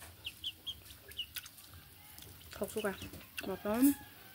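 Domestic chickens clucking. There are a few short high peeps in the first second or so and a run of longer calls near the end.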